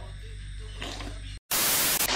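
Quiet room tone, then a brief dropout and a loud burst of static hiss lasting about half a second near the end: a static-noise transition effect at an edit cut.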